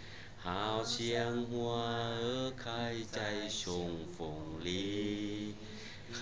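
A person singing without accompaniment: long held notes that glide up and down in pitch, with short breaks between phrases.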